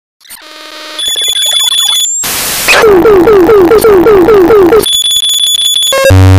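Loud, harsh electronic meme track starting up. A rising buzz leads into a high steady beep and a short burst of noise, then an alarm-like tone that falls in pitch, repeating about four times a second, before the high beeps return near the end.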